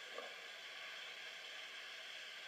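Steady hiss of an old interview recording played back, with faint steady tones under it.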